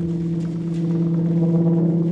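A euphonium holds one long, low note, swelling louder toward the end.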